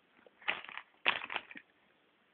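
Plastic packaging being handled, crinkling in two short rustles about half a second and a second in.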